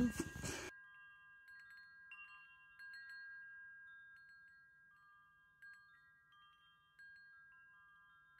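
Faint wind chimes: scattered high metallic tones struck every second or so, each ringing on and overlapping the others. A brief noisy stretch at the very start cuts off abruptly under a second in.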